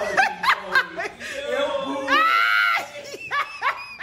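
People laughing and snickering in short bursts, with a long, high-pitched vocal squeal held for well over half a second about two seconds in.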